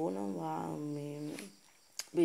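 A person's voice speaking with long, drawn-out syllables for about a second and a half, then a pause.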